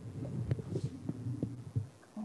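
Low, irregular thumps over a steady hum, with a few sharp clicks, picked up by a headset microphone while a computer is worked to start a screen share: mouse clicks and handling noise.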